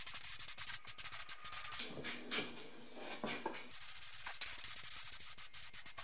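Compressed-air gravity-feed spray gun hissing as it sprays paint, the hiss cut by many short breaks as the trigger is released and pulled again. The hiss stops for about two seconds near the middle, then resumes.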